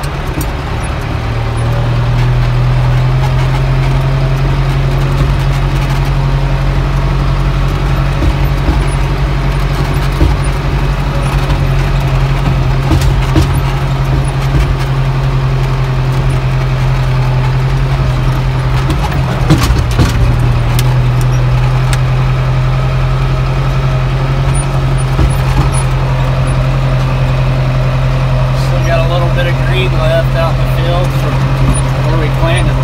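Tractor engine running steadily under throttle, heard from the operator's seat in the cab; it picks up about a second or two in and holds a steady hum. A few knocks and rattles come through about two-thirds of the way in.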